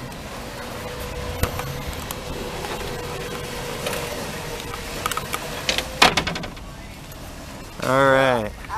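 Power wheelchair drive motors whining steadily as the chair manoeuvres in a van doorway, with a few clicks and a sharp knock about six seconds in, after which the whine stops.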